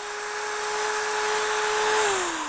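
Electric drill running at a steady speed with an ear of corn spinning on its bit, its motor giving a steady whine.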